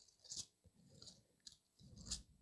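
Faint rustling of thin Bible pages being leafed through by hand, a few soft rustles and small ticks.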